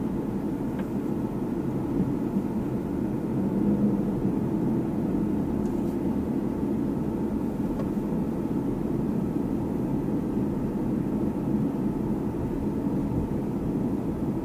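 Steady in-cabin noise of a car driving slowly: a low, even hum of engine and tyres on the road.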